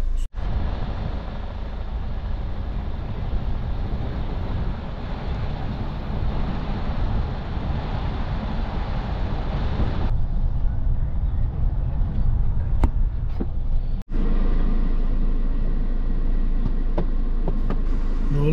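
Steady road and engine noise of a car being driven, heard from inside the cabin, with two brief dropouts where the footage is cut.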